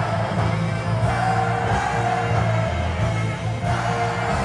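Rock band music with a singer, loud and dense over a steady bass line.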